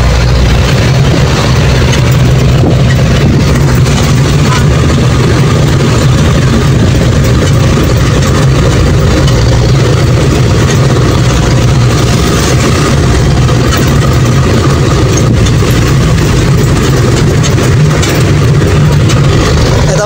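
A passenger jeepney's diesel engine running steadily, with road and cabin noise, heard from inside the open-sided passenger compartment as a loud, even drone.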